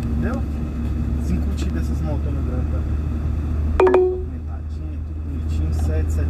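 Low, steady rumble of a car driving in town, engine and road noise heard from inside the cabin. About four seconds in, a short steady tone sounds briefly.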